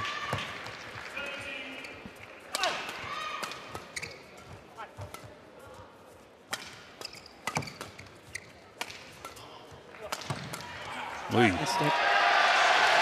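Badminton rally: rackets striking the shuttlecock at irregular intervals, with shoes squeaking on the court. Crowd noise starts to rise in the last second as the point ends.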